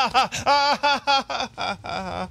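People laughing: a run of short, high-pitched 'ha' pulses that trails off into softer, breathy laughter after about a second and a half.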